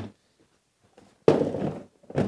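Milwaukee Packout plastic tool box set down onto a Packout rolling tool box to stack it: a hard plastic thunk with a brief clatter about a second and a quarter in, after softer handling noise at the start.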